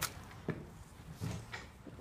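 Footsteps and scuffs on a hard floor, with two soft knocks about half a second apart, as someone steps in through a wooden doorway.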